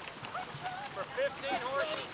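Indistinct chatter of several voices talking, with no clear words and a few faint light knocks.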